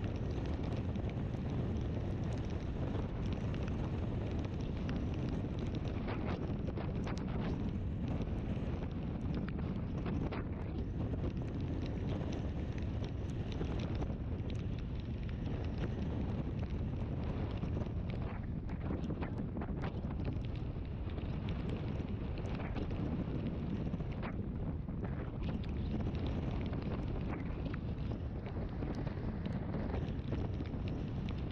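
Steady wind rush and low rumble on the microphone of a moving scooter, with faint ticks scattered through.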